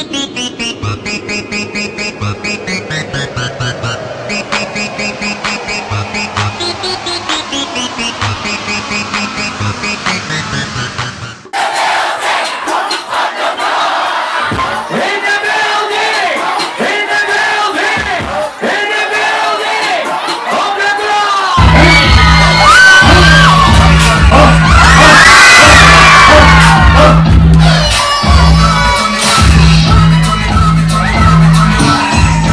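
Electronic music with a fast, even beat, cut off suddenly about eleven seconds in by a loud club crowd shouting and cheering. About ten seconds later a heavy bass beat comes in under the cheering crowd.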